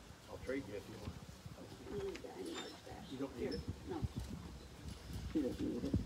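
Faint, indistinct talking, with a bird cooing in the background.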